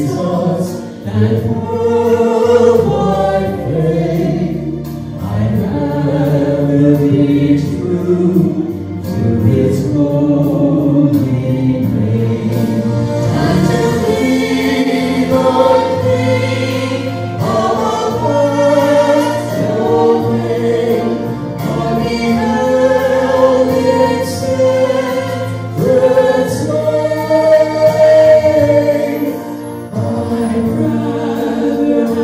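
A man and a woman singing a duet into handheld microphones, in long held notes.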